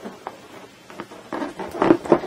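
Air rushing out of a rubber balloon's neck as helium is sucked in from it, with small clicks of the balloon being handled; the rush is loudest near the end.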